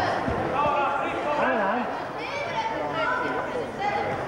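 Several people's voices calling out and shouting over one another at a wrestling bout, with a single short thump about a third of a second in.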